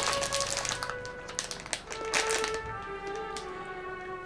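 Background music with steady held notes, over the crackling of a plastic snack pouch of rice crackers being handled in the first two and a half seconds.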